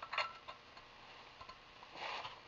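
Copper pipe tapping against a copper elbow fitting as it is pushed into the fluxed socket: one short sharp click near the start, then a few faint ticks.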